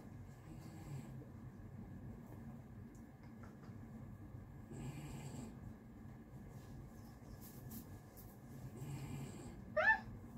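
Quiet room with a faint steady hum. There are two soft rustles, about halfway and about a second before the end, then a short rising vocal sound at the very end.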